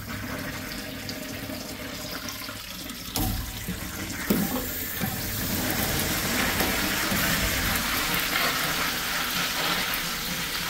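Vintage Crane urinal's chrome flush valve flushing, with water rushing down the porcelain. The rush grows louder about three seconds in, with one brief knock a little after that.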